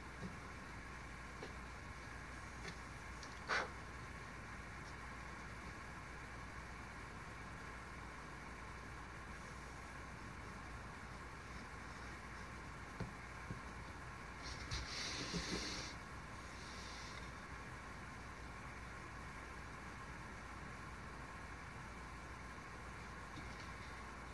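A chip carving knife making thin cuts in a wooden board, heard faintly over a steady low room hum. There is a short sharp cut a few seconds in, a few small ticks later, and a scratchy slicing sound lasting about a second and a half just past the middle.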